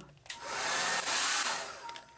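Conair handheld hair dryer switched on briefly: a steady rush of blown air for about a second, then switched off and spinning down with a faint whine near the end.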